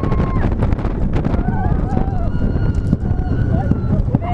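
The Big One's steel coaster train rumbling along its track, with wind buffeting the microphone. Riders' long wavering screams and whoops carry over the rumble, one held at the start and more from about a second and a half in.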